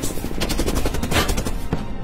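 Gunfire: a rapid burst about half a second in, then single shots, over background music.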